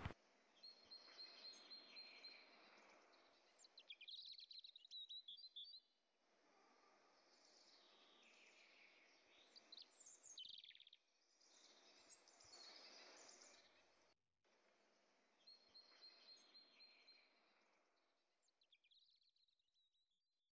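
Near silence, with faint high chirps now and then.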